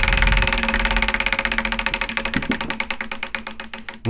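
Large spinning prize wheel ticking as its pointer flicks over the pegs. The clicks come fast at first, then slow and fade as the wheel winds down.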